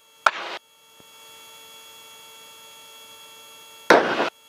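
Steady hum of several fixed tones over faint hiss, heard on a helicopter's intercom audio feed with the rotor noise largely shut out. A brief spoken word comes just after the start, and a short burst of voice comes near the end.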